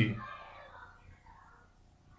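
A man's spoken word trails off at the very start, then faint room tone.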